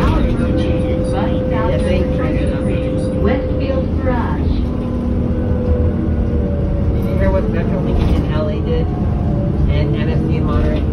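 Cabin sound of a 2008 New Flyer C40LF transit bus under way, its Cummins Westport ISL G compressed-natural-gas engine and Allison B400R transmission running with a deep rumble and a steady whine. People's voices are talking over it at times.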